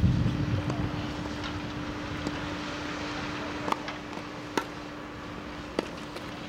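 Tennis ball bounced on a grass court with dull thumps, then sharp racket strikes on the ball in a rally, three hits about a second apart from about halfway, over a steady low hum.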